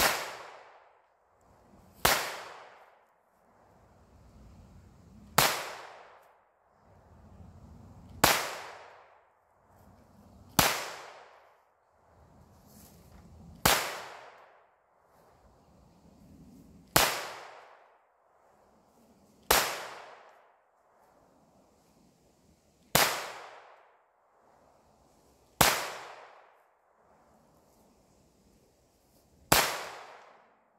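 Slow, single pistol shots, eleven in all, each a sharp crack a few seconds apart with a short echo trailing off.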